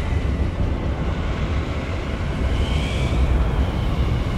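Loud, steady, deep rumble with a hiss over it, like strong wind, making up the effects soundtrack of a finished visual-effects shot. A faint whistling tone rises briefly in it a little past the middle.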